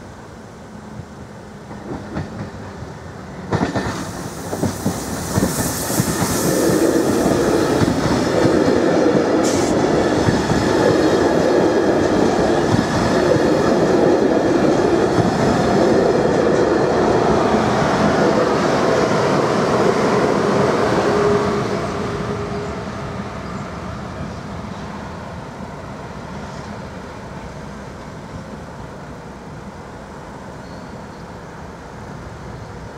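Electric double-deck intercity passenger train passing over a level crossing: its wheels clatter louder as it approaches, with a sharp knock about three and a half seconds in. The clatter stays loud for about fifteen seconds, then fades as the train moves away.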